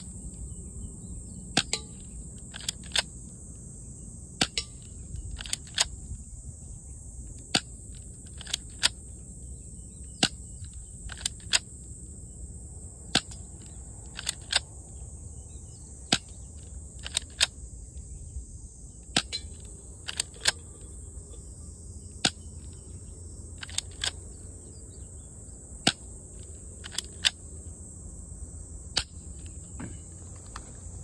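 Air gun shooting at a target, about twenty shots at irregular intervals of one to two seconds. Many shots are a sharp crack followed a fraction of a second later by a second click, the 'kan' of the hit. A steady high-pitched insect drone runs underneath.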